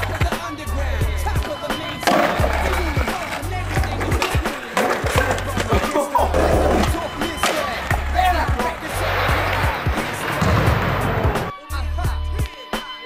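Skateboards clattering and scraping on pavement, with sharp board impacts as skaters bail and fall, over a hip-hop backing track with a heavy beat. The sound drops away suddenly just before the end.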